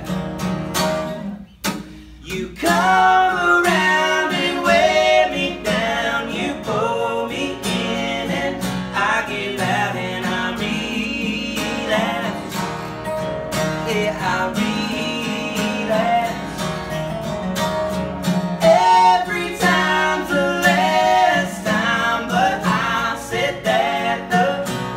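Two acoustic guitars strummed while male voices sing, in a live unplugged performance of a country song, with a brief break in the playing about two seconds in.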